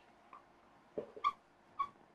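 Marker pen squeaking on a whiteboard in short strokes while writing a word, two brief high squeaks in the second half, with a faint tap of the pen just before them.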